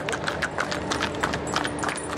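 Hooves of a string of pack horses clip-clopping on an asphalt road as they walk past close by, many quick overlapping hoofbeats.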